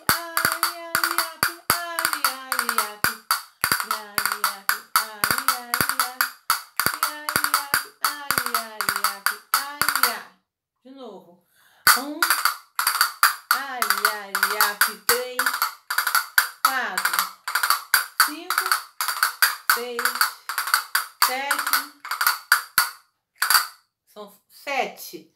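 Hand-held castanets clicking in a quick, even flamenco rhythm, with a woman's voice singing the rhythm along with them; both break off for about a second and a half near the middle, then resume.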